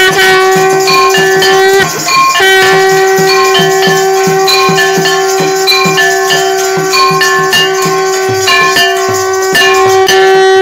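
Loud devotional aarti music: a long held drone note, broken once about two seconds in, with a melody line above it and a steady beat of bell and rattle strokes.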